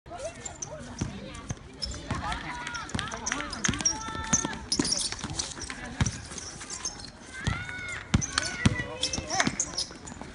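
A basketball bouncing on a concrete court during a game, with irregular thumps about once a second, over players' shouts.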